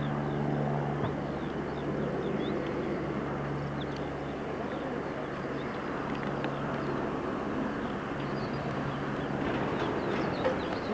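Steady running noise of a passenger train's carriages, heard from the open window of a moving coach, with a few faint high ticks over it.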